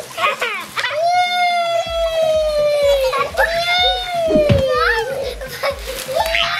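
A child's long, high-pitched squeals, three in a row, each held for one to two seconds and sliding slowly down in pitch.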